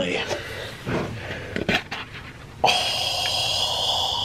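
A lid pried off a large paper bucket of chili: several short clicks and scrapes, then a long steady breathy exhale starting about two and a half seconds in.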